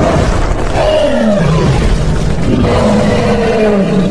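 Dubbed roars for an animated Triceratops: two long calls, each sliding down in pitch, over background music.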